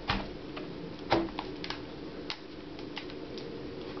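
A few light clicks and knocks as a netbook is handled on a glass-topped table and its lid is opened, the loudest knock about a second in. A faint steady hum runs underneath.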